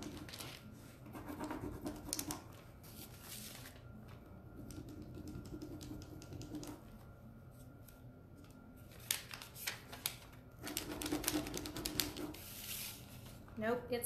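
Scratchy rubbing strokes and small clicks of a decor transfer sheet being rubbed down onto a surface. A letter is being worked to get it to release from its backing, and it will not come off.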